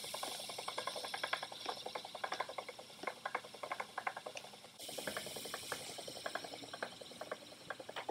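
Wooden treadle spinning wheel running as it is treadled, its drive wheel and flyer turning with a fast, steady run of small clicks and a light whir.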